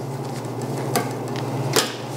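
A curved fillet knife is worked through meat on a stainless-steel table, its blade clicking against the steel twice, about a second in and again more loudly near the end, over a steady low hum.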